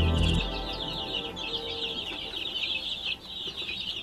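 A crowd of baby chicks peeping nonstop, many high, falling chirps overlapping. Background music plays underneath and stops about half a second in.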